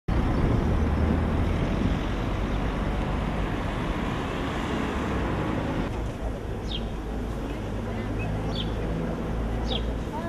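Outdoor street-market ambience: a steady low traffic rumble under background voices. From about six seconds in, a few short, high, falling chirps sound at intervals.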